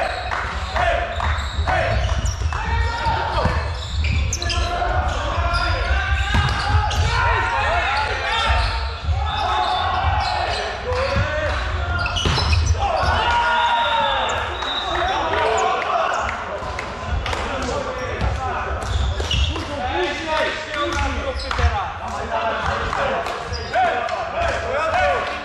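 Volleyball rally sounds in a large, echoing sports hall: the ball is struck and thuds on hands and floor, and players call out and talk to each other.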